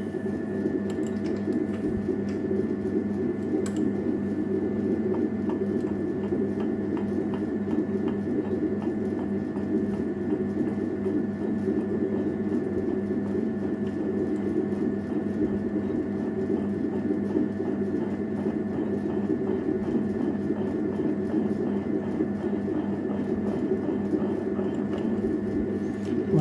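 Metal lathe running at a steady speed: a constant motor and spindle hum with a few steady higher tones. The spindle turns off-centre round stock in the three-jaw chuck while a roller bump tool presses it into alignment.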